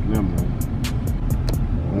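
Steady low road rumble inside a car cabin, under music with a quick, ticking beat that stops about three-quarters of the way through.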